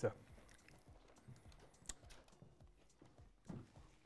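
Faint sounds of people eating pizza at a table: a few light clicks and small knocks, the sharpest about two seconds in, against quiet room tone.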